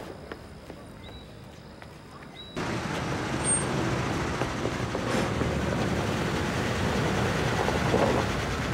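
A car approaching slowly along a lane, its engine and tyres making a steady noise that cuts in suddenly about two and a half seconds in, after a quiet opening.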